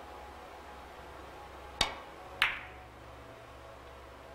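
Three-cushion billiards shot: a sharp click of the cue tip striking the cue ball, then about half a second later a louder, briefly ringing click as the cue ball hits an object ball.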